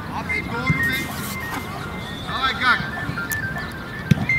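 A thin, high tune of short stepped notes plays steadily, while voices shout out on the pitch twice, about half a second in and again in the second half.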